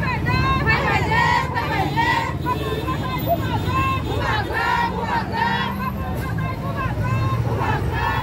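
A marching crowd's voices chanting slogans in a repeating rhythm, over a steady low engine hum.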